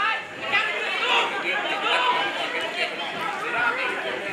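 Chatter of several voices talking over one another, from spectators watching a football match.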